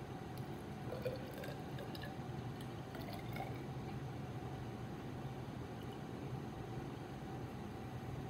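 Cold water poured from a graduated cylinder into a foam cup: faint trickling with a few small clicks in the first few seconds, over a steady room hum.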